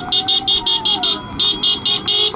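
Car horn sounding in a rapid string of short beeps, about six a second, with a brief pause midway, as the first cars arrive on a newly opened road.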